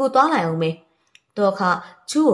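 A woman narrating an audiobook in Burmese: two spoken phrases with a short pause between them.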